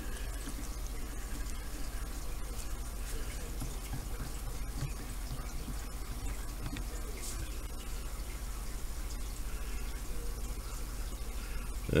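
Faint scattered clicks and ticks of a small metal rebuildable vape tank being handled and its top cap screwed on, over a steady low hum and hiss.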